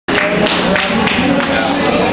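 Bar crowd talking over one another, with scattered claps.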